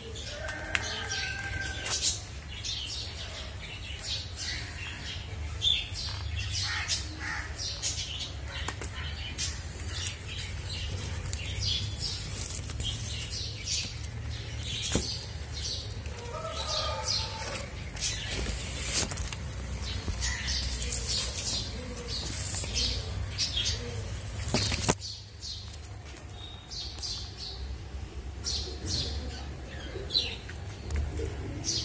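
Small birds chirping and tweeting in short, repeated calls, over a steady low rumble on the microphone. The background drops away abruptly near the end.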